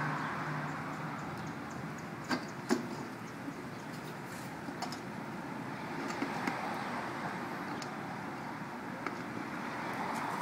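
A golden retriever mouthing a tennis ball in a stainless steel water bowl: water sloshing, with a few short sharp clicks and splashes, the two loudest close together about two and a half seconds in. A steady background hum runs underneath.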